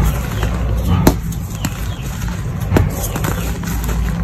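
Hands squeezing and crumbling soft reformed gym chalk powder, giving several sharp, short crunches at irregular spacing. Underneath runs a steady low background rumble.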